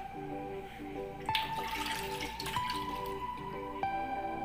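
Background music of repeating short notes over a held tone; about a second in, a short wet sliding splash as cubes of set gelatin are tipped from a glass dish into a bowl of milky mixture.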